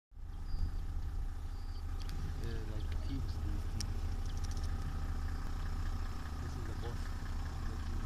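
Vehicle engine idling, a steady low rumble heard from inside the cabin, with faint voices murmuring a couple of times.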